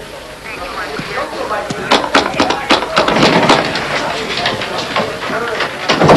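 Indistinct voices over background music, growing louder and busier about two seconds in.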